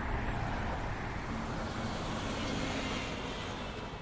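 A steady rushing noise, slowly fading out.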